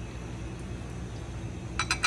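Hot oil sizzling steadily around a battered squash blossom just laid in a frying pan. Near the end, a few sharp clinks of a metal fork against the bowl of beaten egg.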